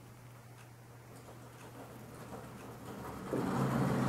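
Steady low hum of a room air conditioner, with faint scratches of a fountain pen nib on paper. About three seconds in, a louder buzzing drone swells up and holds.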